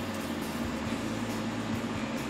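Bandsaw running idle with no cutting: a steady electric motor hum with a faint low drone.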